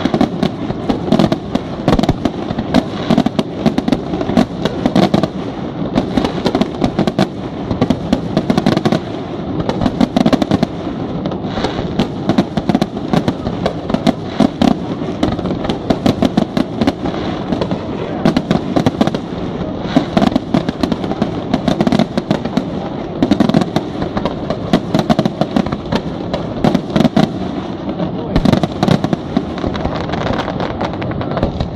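Aerial fireworks display: a continuous, dense barrage of shell bursts, several bangs a second with crackling between them and no pause.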